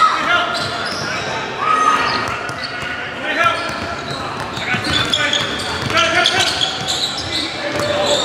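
Basketball dribbled on a hardwood court, the bounces echoing in a large gym, with players' voices in the background.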